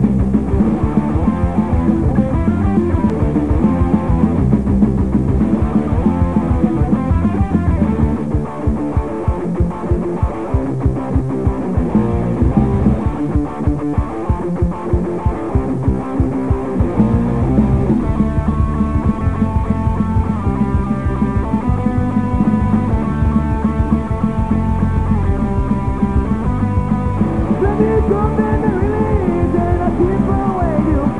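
Melodic hardcore punk band of two distorted electric guitars, bass and drums playing the song's opening. Partway through the music turns choppy and stop-start, then held guitar notes ring out over the band for the rest of the stretch.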